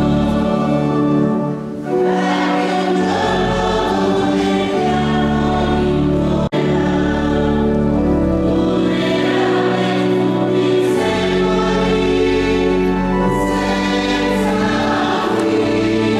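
Choir singing a slow hymn over organ, with long held chords and low sustained bass notes. The sound cuts out for an instant about six and a half seconds in.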